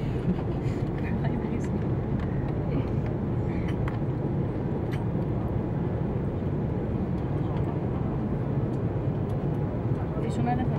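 Steady low rumble inside the cabin of an Airbus A330-300 taxiing after landing: engine and rolling noise carried through the fuselage.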